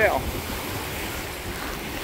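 Steady rush of wind and water from a sailboat moving under sail, the bow wave hissing along the hull, with wind rumbling on the microphone.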